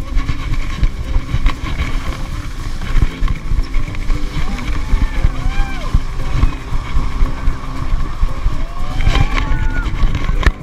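Wind buffeting an action camera's microphone as a skier runs fast down soft spring snow, a loud, uneven rumble mixed with the hiss of skis on the snow.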